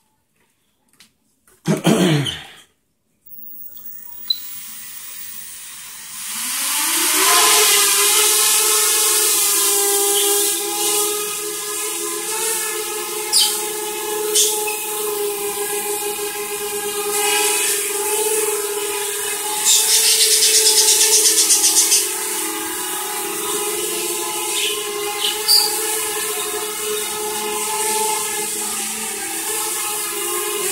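Small quadcopter's brushless motors and propellers spooling up about six seconds in with a rising pitch, then a steady multi-tone whine and hiss as it hovers, the pitch wobbling slightly as the motors hold it in the air.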